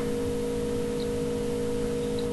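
Steady hum from the moored harbour boat's engine idling, with a constant mid-pitched tone over a low rumble.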